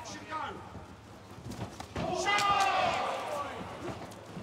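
A few dull thuds of strikes landing in a cage fight, then a loud shouted voice held for about a second from halfway through.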